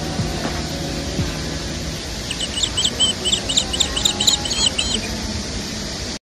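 A small songbird singing a quick run of high chirps, about four a second, starting a little past two seconds in and lasting about three seconds, over steady outdoor background noise.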